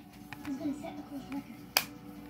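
A plastic Blu-ray case is handled and snapped shut, giving one sharp click near the end, with a few fainter plastic ticks before it. Television dialogue plays in the background.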